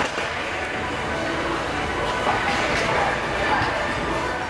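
Busy gym room noise: a steady din of background voices and equipment, with a few light knocks as dumbbells are lifted from a rack.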